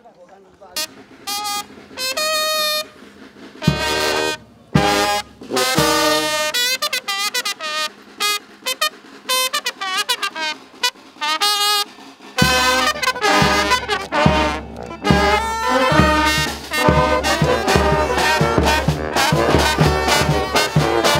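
A brass band of sousaphone, saxophones, trumpets and trombones plays: a few separate held notes first, then a tune. From about twelve seconds in, a bass drum and cymbals keep a steady beat under the horns.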